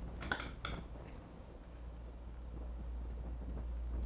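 Hands handling folded fabric and a pair of scissors on a tabletop: a few light clicks and rustles in the first second, then only a steady low room hum.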